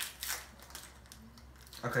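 Plastic candy wrapper crinkling as it is torn open, with a few sharp crackles in the first half second, then quieter rustling.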